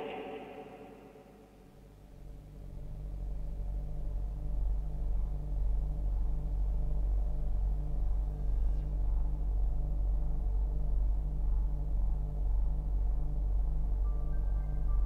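Deep synthesizer bass drone swelling in over the first two seconds and then holding steady, with a regular pulsing synth tone layered above it.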